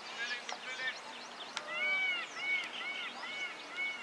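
Birds chirping and calling all around an open field, with a loud call repeated about five times, roughly three a second, in the second half, the first note the loudest.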